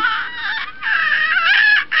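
Baby squealing happily: two high, wavering squeals, the second about a second long.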